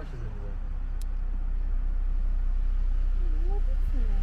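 Wind buffeting the camera microphone, a low rumble that grows louder over the few seconds.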